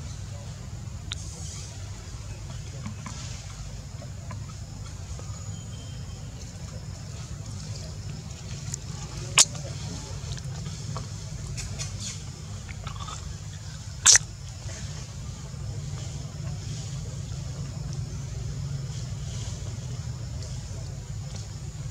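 Outdoor background noise: a steady low rumble with a faint high hiss, broken twice by a short sharp click, about nine and fourteen seconds in.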